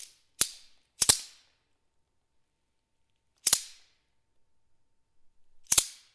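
Sharp dry clacks of a handheld wooden clapper, struck at irregular spacing with silence between: a single clack, a quick double, another single, then a double near the end. Each clack rings on briefly in the hall. No accordion notes sound.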